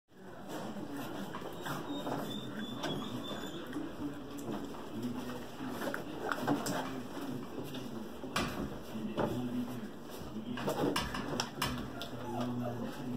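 Australian Shepherd puppies playing with toys: paws scuffling and scattered sharp clicks and knocks against the floor and pet bed, with low, wavering voice-like sounds underneath.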